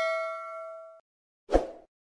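Bell-like chime sound effect from an animated notification-bell icon: a single bright ringing tone that fades, then cuts off abruptly about halfway through. A short burst of noise follows shortly before the end.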